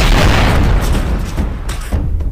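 Explosion-type boom sound effect for an energy blast: a loud hit at the start whose rumbling tail fades away over the next two seconds.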